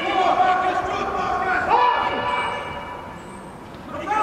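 Men shouting on a football pitch in an empty stadium: long drawn-out calls, one at the start and a second held call starting about halfway, with the sound carrying around the empty stands.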